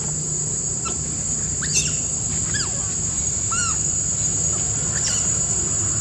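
Baby long-tailed macaque giving about five short, squeaky calls that rise and fall in pitch, spread over the few seconds, with the loudest near two seconds in. A steady high-pitched insect drone runs underneath.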